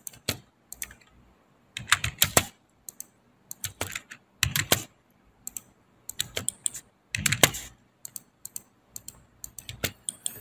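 Computer keyboard typing, a few keystrokes at a time in irregular clusters separated by short pauses.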